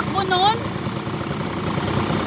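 Engine of a small off-road vehicle running steadily at a low idle, with a brief vocal exclamation over it in the first half second.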